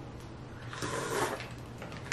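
Slurping crab butter from the top shell of a Dungeness crab: one noisy slurp lasting under a second, around the middle.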